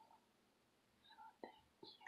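Near silence, with a few faint, soft chirps from a budgerigar about a second in and a light click just after.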